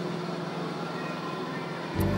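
Steady background din of an indoor amusement arcade: an even wash of noise with a low hum, and no single event standing out.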